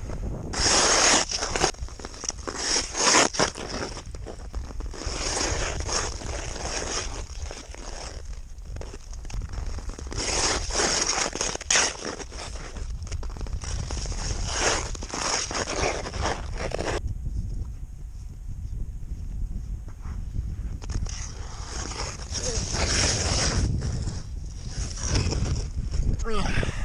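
Ice-skate blades scraping over snow-dusted natural lake ice, stroke after stroke, with a quieter stretch of a few seconds past the middle. A low wind rumble on the microphone runs underneath.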